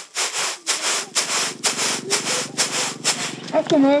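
Grain being winnowed in a flat woven basket tray: a rhythmic rasping swish about twice a second as the grain is tossed and slides across the weave, stopping a little after three seconds in. A voice calls out near the end.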